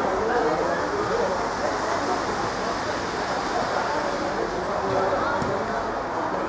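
Indistinct voices from around a football pitch, faint and broken, over a steady background noise.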